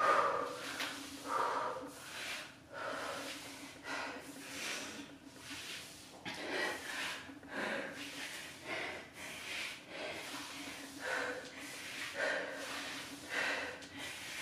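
A woman breathing heavily from exertion while doing repeated pike exercises, short breaths in and out coming more than once a second. A faint steady hum sits underneath.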